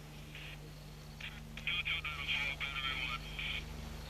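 A faint, tinny voice comes over a military field radio, thin like a telephone line, starting about a second in. A steady low hum runs under it.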